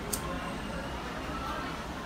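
Low background room noise with faint distant voices and a brief click near the start.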